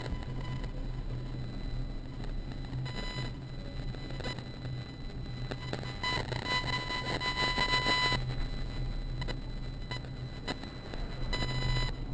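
A high-pitched squeal with overtones sounds three times: briefly about three seconds in, for about two seconds from six seconds in, and briefly again near the end. Under it runs the low, steady rumble of a bicycle being ridden.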